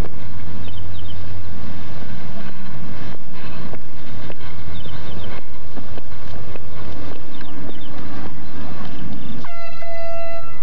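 Loud, busy street noise with a low vehicle rumble, then, half a second before the end, a handheld canned air horn sounds one steady blast.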